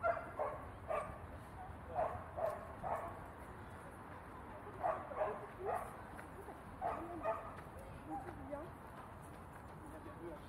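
A dog barking in short groups of two or three barks, a group every two seconds or so, turning fainter after about eight seconds.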